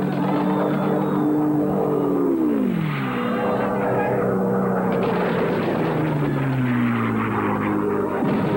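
Propeller warplane engines passing low overhead, each droning note dropping in pitch as it goes by. The first falls sharply about two and a half seconds in, and a second sinks slowly through the rest. Underneath runs a steady rough noise.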